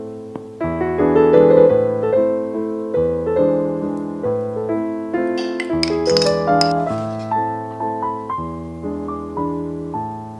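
Background piano music: a gentle melody of single notes and chords, each struck note fading away.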